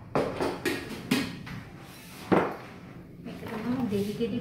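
A few short knocks and clatters of kitchen items being handled and set down, the loudest about two and a quarter seconds in.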